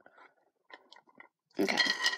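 Faint chewing of a sugar-shelled Cadbury Mini Egg, a few short crunches in the first second or so, followed by a spoken 'okay'.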